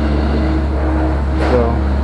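A steady low machine hum with a constant drone and no change in pitch. A man says one short word near the end.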